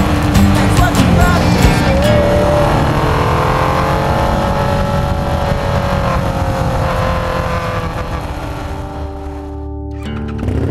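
Husqvarna Nuda 900R parallel-twin engine running at road speed, with wind noise and rock music laid over it. The engine pitch drops about a second in and then holds fairly steady. The sound fades out near the end.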